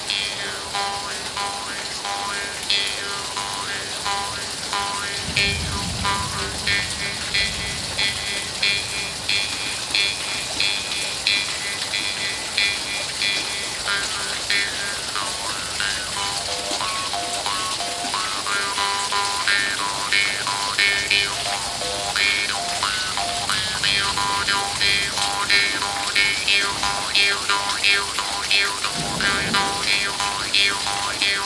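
Small Vietnamese Hmong Dan Moi jaw harp, a brass double-reed mouth harp, plucked in a quick, steady rhythm: one drone note with overtones that shift as the mouth changes shape. A steady rain hiss sounds behind it.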